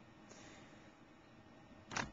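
Faint room tone with a brief soft hiss around half a second in, then a single sharp click near the end.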